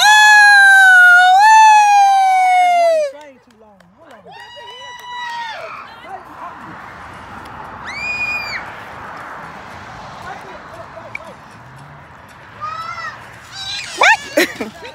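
A long, loud, high-pitched yell lasting about three seconds that falls in pitch at its end, followed by a few shorter high calls over a soft hiss.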